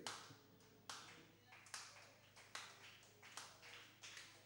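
Slow, evenly spaced hand claps or taps, about one every 0.8 seconds, each ringing briefly in the room, beating time just before a song begins.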